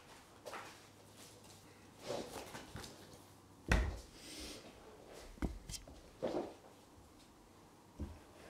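Beer being poured slowly from a can into a tilted glass, faint liquid trickling and fizzing. About halfway through, a sharp thump on the wooden table is the loudest sound, followed by a few light knocks and clicks.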